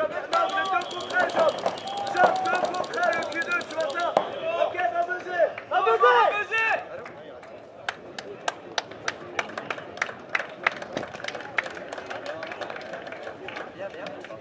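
Paintball markers firing: in the first half a fast, even rattle of shots under shouting voices, then from about seven seconds in the voices drop away and separate sharp pops follow, several a second.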